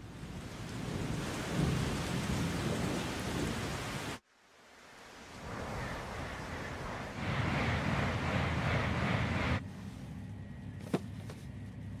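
Storm sound effects: heavy rain with a low rumble of thunder and wind. The sound cuts off suddenly about four seconds in, swells back up, and drops to lighter rain about ten seconds in, with one sharp click near the end.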